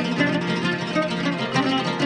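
Oud playing a taqsim: a steady run of plucked notes.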